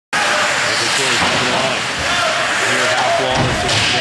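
A play-by-play commentator talking fast over the noise of a hockey game in an arena.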